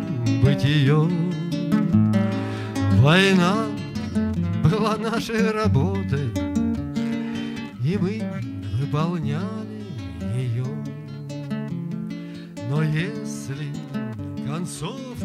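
Classical nylon-string guitar accompanying a man singing, with long held notes that waver in pitch.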